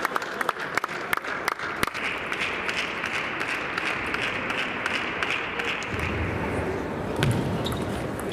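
Table tennis ball clicking sharply off bats and the table in a large hall, with scattered clicks throughout and a quicker run of hits as a rally starts near the end. A murmur of background voices runs under it.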